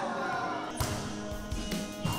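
Voices in a large gym hall, then background music comes in just under a second in, mixed with sharp thuds of a volleyball being hit and bouncing on the court.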